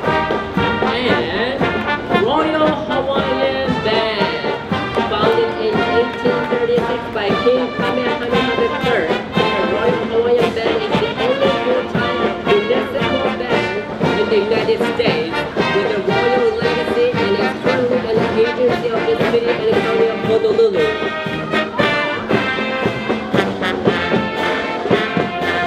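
Brass band music with a steady beat: a melody carried by brass over drums, playing without a break.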